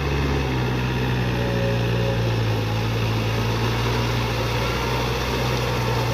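Yanmar 494 tractor's diesel engine running steadily under load as it tills a flooded rice paddy on steel cage wheels. The sound grows a little louder just after the start, then holds even.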